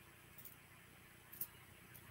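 Near silence, with two faint light clicks about a second apart from small metal jewellery, a fine chain and bangles, being handled.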